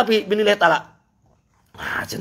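A man's voice making a rapid, wavering vocal sound without recognisable words for just under a second, then a pause of about a second, then his voice again near the end.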